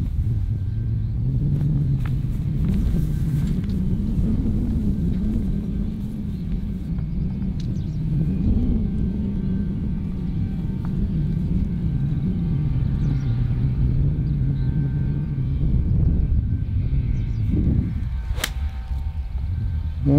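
A steady low rumble, with one sharp click of a golf iron striking the ball off the fairway turf about a second and a half before the end.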